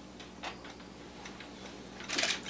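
Quiet room tone with faint ticking over a low steady hum.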